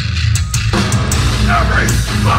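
Live metallic hardcore band playing loudly: drums and low end alone at first, then the distorted guitars crash back in under a second in, with a shouted vocal near the end.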